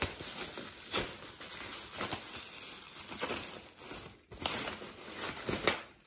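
Thin plastic bag rustling and crinkling as a plastic hubcap is worked out of it, with several sharper crackles.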